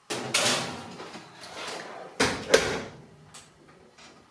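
Metal baking tray scraping along the oven shelf runners as it is moved up a shelf, then a loud metallic clunk a little over two seconds in, typical of the oven door being shut.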